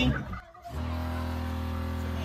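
Small electric water pump for a motorhome sink switching on as the tap is opened and running with a steady hum, showing the sink's water supply works.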